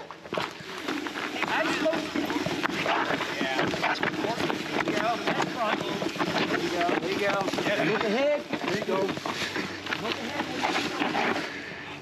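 Full-suspension mountain bike rolling down rock slabs: knobby tyres on stone and a steady clatter of knocks and rattles from the bike, with wind on the microphone.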